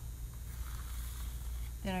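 Faint scraping of a putty knife spreading Venetian plaster onto a stencil with light pressure, over a steady low hum. A voice begins near the end.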